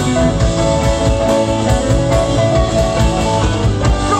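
Live rock band playing: electric guitar over bass, held chords and a drum kit, in a stretch between sung lines.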